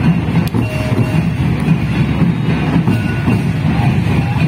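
Santal Baha festival dance music played live: a dense, steady low drum pulse with a thin held melody line above it.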